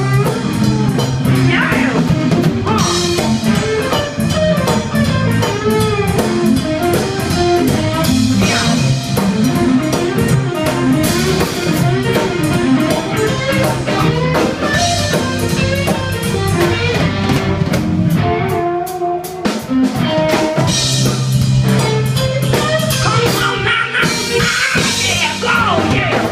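Live band playing an instrumental passage: an electric guitar lead with bent notes over bass and drum kit. The bass drops out briefly about three-quarters of the way through, then comes back.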